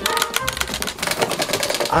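Metal latches of an aluminium attaché case being pulled and rattled, a fast run of clicks: the case is locked and won't open.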